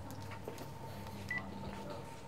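A mobile phone gives one short, high beep about a second in as a call is picked up, over a faint steady electrical hum.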